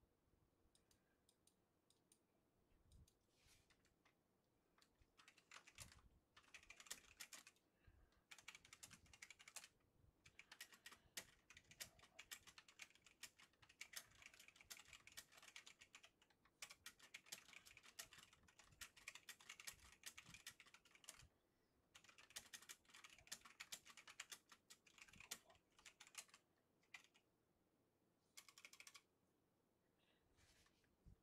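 Faint computer keyboard typing: runs of quick key clicks broken by short pauses, starting about five seconds in.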